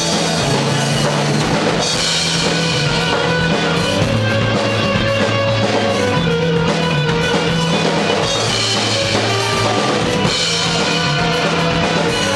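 Live rock band playing an instrumental passage: drum kit with bass drum, distorted electric guitars and bass guitar, loud and continuous, with the low bass notes changing about every two seconds.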